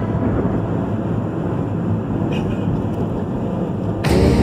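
Steady road and engine noise heard inside a car at highway speed, a deep even rumble with a faint brief chirp a little past halfway.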